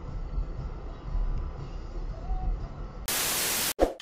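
Low, steady rumble of road and cabin noise picked up by a dashcam. About three seconds in comes a loud burst of white-noise static lasting under a second, a transition effect between clips.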